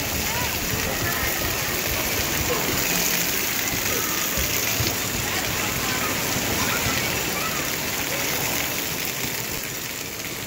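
Steady rush of water falling and splashing in a water-park splash pad and down a shallow play slide. Voices of children and adults are mixed in underneath.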